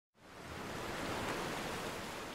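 Steady rushing noise with no tone or rhythm, fading in just after the start.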